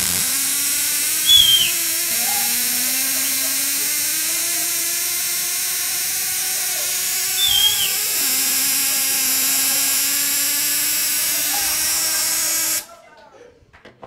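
Spark-gap Tesla coil running: a loud, harsh buzzing crackle from its spark gap and discharges that holds steady for about thirteen seconds, with two brief louder moments, then cuts off suddenly when the coil is switched off.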